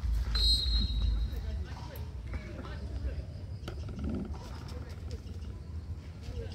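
A short, high, steady whistle blast about half a second in, typical of a referee's whistle restarting play. Heavy low rumble sits on the microphone for the first second, and scattered voices of players and spectators follow.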